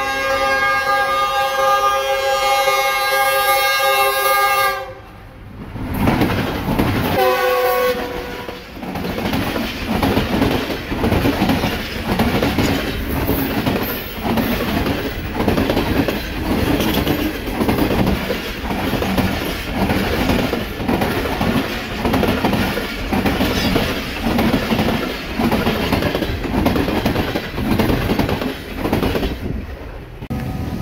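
Pakistan Railways express train passing close at speed: the locomotive's horn sounds one long blast for about five seconds, then a short second blast, and then the coaches rush past with a steady clickety-clack of wheels over rail joints.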